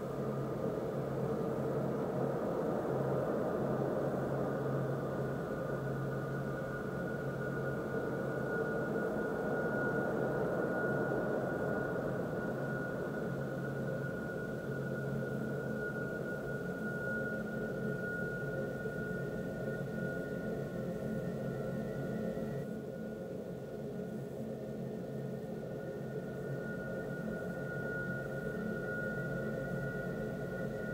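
A steady, noisy drone with a thin high tone held above it; about two-thirds of the way through, the sound changes and the high tone shifts.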